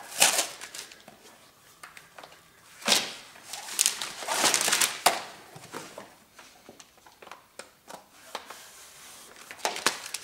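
Handling noise from laying vinyl design-floor planks on a self-adhesive underlay mat: rustling of the plastic backing film, and planks set down and rubbed on by hand. It comes in a few short noisy bursts, the strongest about three and five seconds in, with small clicks between.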